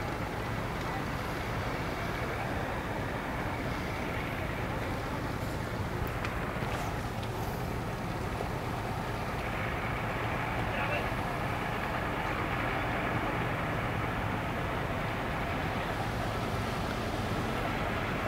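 Steady outdoor background noise: a low engine hum, as from idling outboard motors, under a faint murmur of distant voices.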